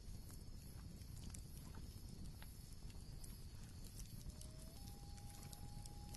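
Faint campfire crackle: sparse small pops and clicks of burning logs over a low rumble. A faint held whistle-like tone comes in about four and a half seconds in.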